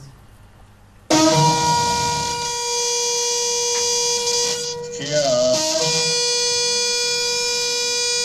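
A long curved shofar blown in two long, steady blasts: the first begins about a second in, and after a brief wavering break in pitch near the middle the second holds on to the end.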